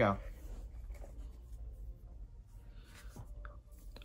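Faint scraping and rustling of paperboard packaging being handled, in a few soft, scattered scrapes over a low steady room hum.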